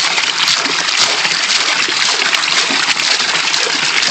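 Water pouring steadily from an overhead pipe into a nearly full plastic barrel fish tank, churning the surface. A hand splashes in the water: the tank is overflowing and water is being scooped out.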